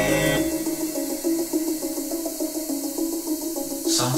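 A recorded song playing back over hi-fi loudspeakers. About half a second in, the bass and fuller sound drop away to a sparse line of repeated mid-pitched notes, and the full mix comes back in right at the end.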